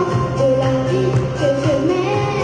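A girl singing a pop song into a handheld microphone over a karaoke backing track, her voice amplified through the PA.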